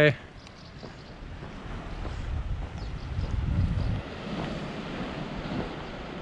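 Wind buffeting the camera's microphone: a low rumble that builds over a couple of seconds and drops off suddenly about four seconds in, over a steady outdoor hiss.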